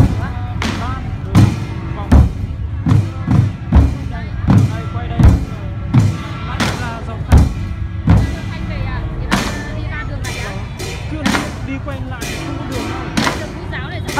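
A large drum beaten in a steady beat, one deep stroke about every three-quarters of a second, with music playing along. In the second half the deep strokes give way to lighter, quicker hits.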